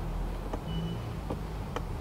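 Low steady rumble with a few faint clicks as the tailgate release switch on the driver's door panel is pressed; the power tailgate does not move yet.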